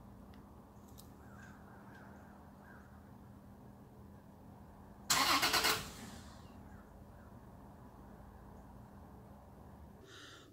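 Toyota Tacoma V6 turned over by a remote starter in one brief burst of cranking, under a second long, about five seconds in; it then dies away rather than settling into a run. This fits the fault the owner describes: it cranks over but doesn't actually start.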